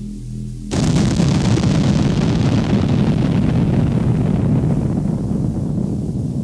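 A sudden loud boom-like crash about a second in, cutting off soft synth tones. Its hiss fades over several seconds while a low rumble carries on: a title sound effect in an intro soundtrack.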